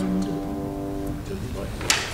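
A church choir's final held chord ending: the sustained voices release and die away over about a second. Then come faint rustling and one sharp click near the end.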